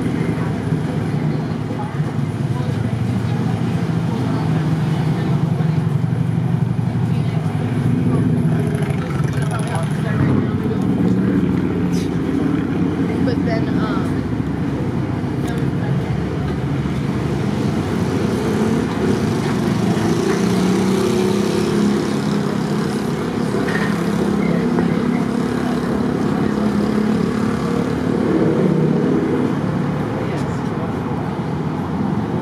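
Street ambience: car traffic running along the road, with indistinct talking that never forms clear words.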